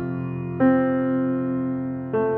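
Piano played slowly with the sustain pedal down: a note from just before keeps ringing, then a new note is struck about half a second in and left to ring and slowly fade.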